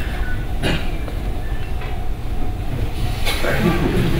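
Steady low rumble of lecture-room background noise during a pause in the talk, with a brief knock about half a second in and faint voice sounds near the end.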